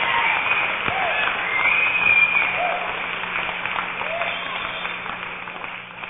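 Audience applauding, with voices calling out, fading away toward the end.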